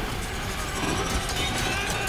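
Loud, continuous rumbling noise with short gliding squeals over it, part of an action film's dense sound-effects mix.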